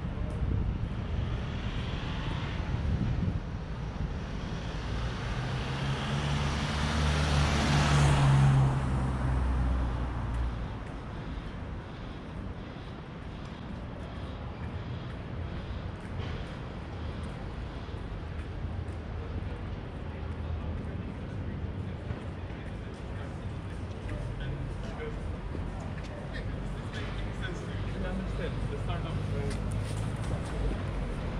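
Street traffic: a motor vehicle passes close by, its engine hum and tyre noise building to the loudest point about eight seconds in and dying away by ten seconds. Then a steady, lower hum of city traffic.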